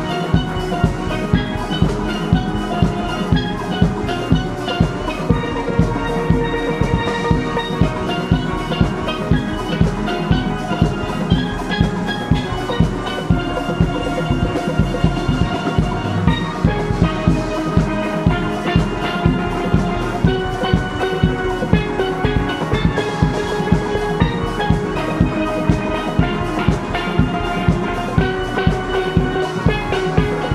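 A steel orchestra of many steelpans playing a tune together, with a drum kit keeping a steady beat underneath.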